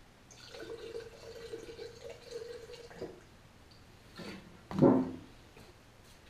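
Liquid poured from a rectangular metal can into a glass jar of automotive paint: a steady pour lasting about two and a half seconds. A click and a knock follow, then a louder clunk about five seconds in.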